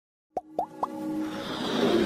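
Intro-animation sound effects: three quick cartoon plops, each a short upward swoop a little higher than the last, about a quarter second apart, followed by a rising musical swell.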